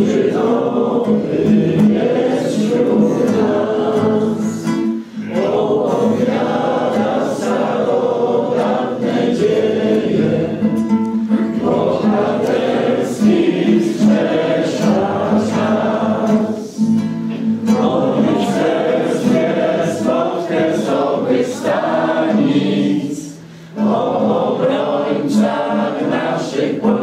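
A room full of people singing a Polish scout song together, accompanied by a nylon-string acoustic guitar. The singing runs on in lines with short breaks between them, and a longer pause near the end.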